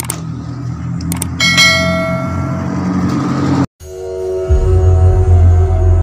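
Subscribe-button animation sound effect, a couple of clicks and then a ringing bell chime that slowly fades, over a steady motorcycle engine hum. The sound cuts out about three and a half seconds in, and a music sting with heavy bass follows.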